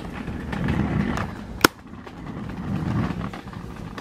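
Handling noise of a phone camera being picked up and carried, uneven rustling and rumbling, with one sharp click about one and a half seconds in.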